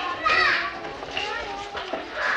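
A room full of small kindergarten children playing and chattering, many high voices overlapping.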